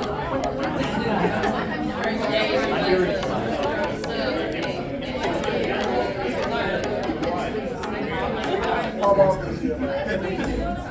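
Many people talking at once in a large room: a steady hubbub of overlapping conversations with no single voice standing out.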